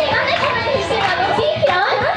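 Several girls' voices through stage microphones and a live-house PA, lively and overlapping, with little or no music under them.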